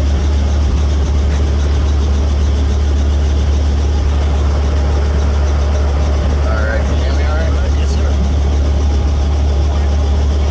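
Robinson R44 helicopter running on the helipad: a loud, steady low drone from its piston engine and turning rotor, unchanging throughout.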